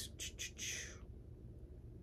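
Quiet room tone with a faint steady low hum. In the first second there are a few short, soft noises with no pitch, such as breaths or the handling of a yarn cake.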